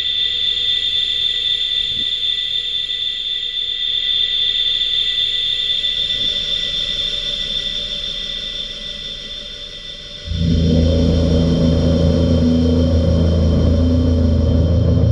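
Electroacoustic contemporary music: a sustained high ringing tone over a faint low rumble, then about ten seconds in a loud, low, dense drone of several held pitches cuts in suddenly.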